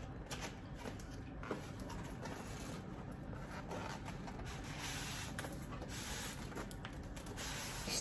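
Cardboard statue box being opened and its foam-packed contents worked out: soft, steady rubbing and scraping of cardboard and foam, with a few light taps.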